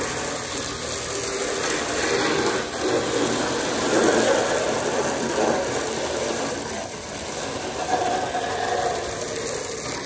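A garden hose spraying a jet of water onto a car bumper, a steady hiss and spatter of water hitting plastic as the freshly sanded bumper is washed down.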